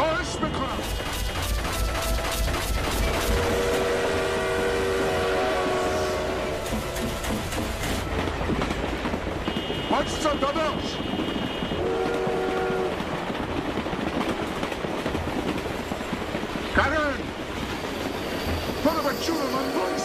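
A moving train: a multi-tone train horn sounds several long blasts over the rumble and rapid clatter of the wheels.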